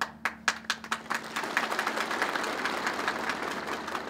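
Audience applause: a few separate claps at first, filling out after about a second into steady clapping by many hands.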